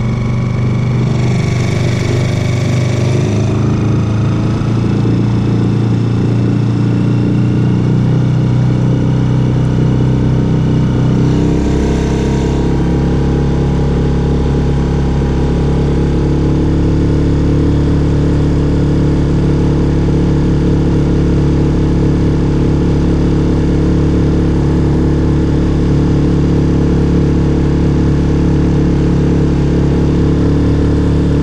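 Suzuki outboard motor running steadily while driving the boat, its note shifting about eleven seconds in as the throttle is changed.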